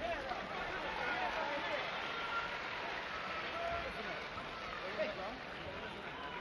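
Arena crowd: many indistinct voices talking and calling out at once, with no single voice standing out.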